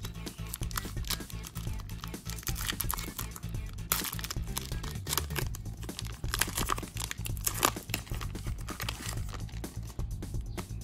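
Foil wrapper of a Pokémon TCG booster pack crinkling and tearing as it is pulled open by hand, the crackling thickening from about four seconds in, over background music.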